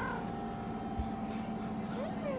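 A domestic cat gives a short meow right at the start while being petted, then a steady low hum continues with a soft thump about a second in.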